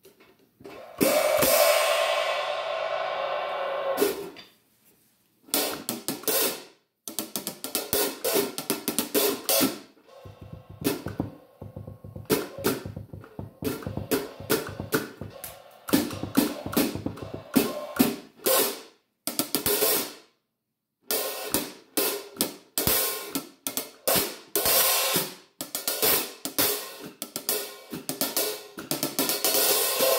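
13-inch vintage Zanchi F&F Vibra paper-thin hi-hat cymbals played with a drumstick. About a second in, one stroke rings for about three seconds. After that come bursts of quick stick strokes with short pauses between them.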